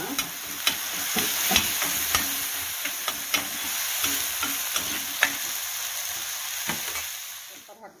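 Onions, garlic and green chilli paste sizzling in oil on a flat tawa, with frequent sharp clicks and scrapes as the mixture is stirred on the pan; the sizzle drops away just before the end.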